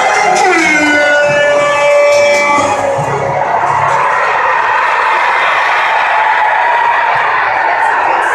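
Music playing over a large crowd's cheering and chatter. Held musical notes, with a falling glide near the start, give way after about three seconds to a dense, steady crowd hubbub.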